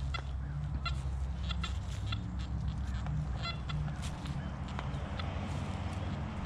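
Nokta Anfibio metal detector's audio response as the coil is swept over a lawn: short, nasal beeps repeated every half second or so, with a few lower tones, over a steady low hum.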